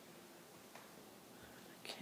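Near silence: faint room tone, with one faint tick.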